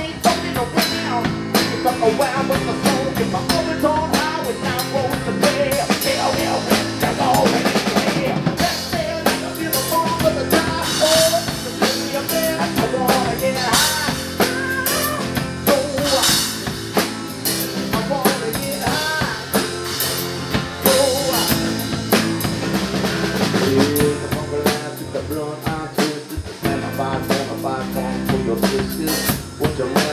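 Live band music: a drum kit played with sticks, snare and bass drum keeping the beat, behind an acoustic guitar.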